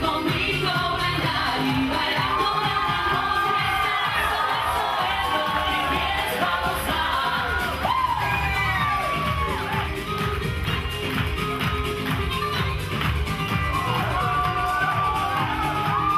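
Salsa band playing, with singing over a steady beat, and a crowd cheering and whooping along.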